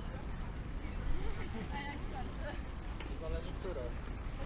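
Outdoor ambience of passing pedestrians: snatches of their conversation come and go over a steady low rumble.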